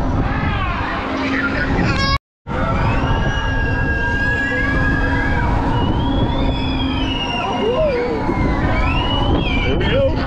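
Wind rushing over the microphone on a moving spinning ride, with riders' voices shrieking and calling in rising and falling glides over it. The sound cuts out briefly a little after two seconds in.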